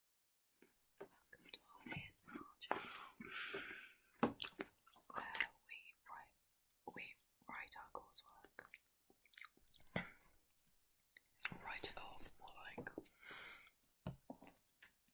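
Quiet, soft-spoken talk and whispering between two people, broken by frequent clicks and rustles of handling close to the microphone.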